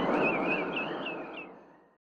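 Television title-card sound effect: a noisy whoosh with warbling, chirp-like high tones above it, fading out over the second half.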